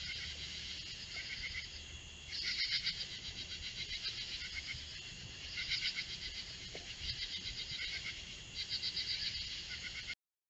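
Chorus of night-singing insects: a steady high trill with repeated bouts of rapid, raspy pulsed calls, each lasting about a second, coming several times.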